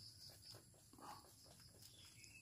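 Faint, irregular crunching of rabbits chewing fresh leaves, with a faint high pulsing chirp in the background.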